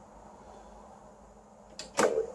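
Faint steady hiss and hum from a TV playing a Betamax tape over an RF connection during a quiet stretch of the soundtrack, ending in a sharp onset as a voice starts.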